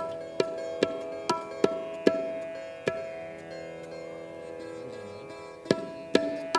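Sitar playing a slow melodic passage: single plucked notes about twice a second, then one note left ringing for a few seconds before a quick run of plucks near the end.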